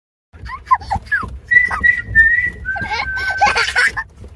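A young child's high voice chattering and laughing, with a long held whistled note that steps down to a slightly lower note halfway through and runs on to the end.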